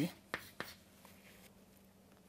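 Chalk writing on a chalkboard: two sharp taps of the chalk against the board within the first second, then a faint short stroke.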